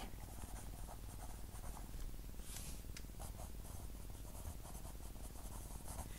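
Ballpoint pen writing on squared notebook paper: faint scratching of the tip as a few words are written by hand.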